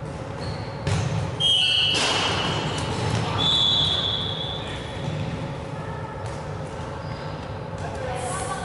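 Dodgeball play on a wooden sports-hall court: two sharp ball impacts about a second in, then high-pitched squeaks and players' voices echoing in the large hall.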